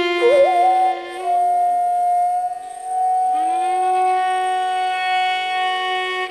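Carnatic bamboo flute (venu) and violin playing a slow melodic line without percussion. A note bends into a held tone at the start, and about three seconds in a new phrase slides up into a long sustained note.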